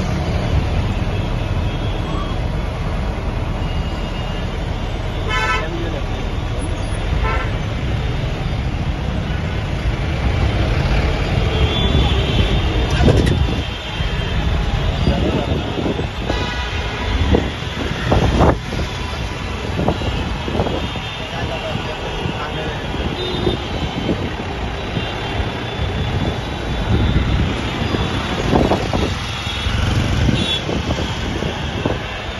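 Busy road traffic heard from inside a moving vehicle: a steady engine and road rumble, with vehicle horns honking several times, some of them short toots.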